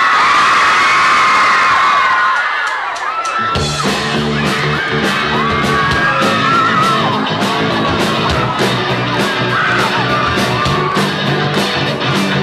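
A crowd of fans screaming, then about three and a half seconds in a live pop-rock band comes in at full volume with drums, electric guitars and bass in a steady beat. The screaming carries on over the band.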